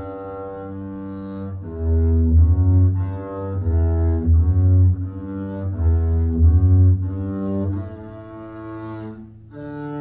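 Double bass played with the bow, going through a slow folk-song melody as a string of separate sustained notes, about one note a second, with a short break near the end.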